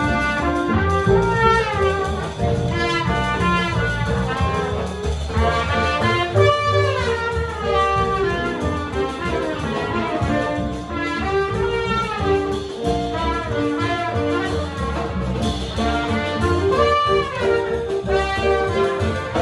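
A live jazz group of trumpet, piano, upright bass and drums plays continuously, with the trumpet leading in quick melodic phrases over plucked upright bass, piano and drums.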